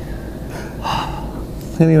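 A man's breathy, gasping laugh about a second in, over a low steady hum; speech starts again near the end.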